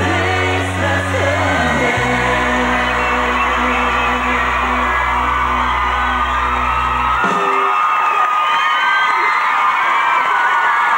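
Pop song ending on a long held chord with singing over it. The music cuts off about seven seconds in, leaving a studio audience of young fans cheering and whooping.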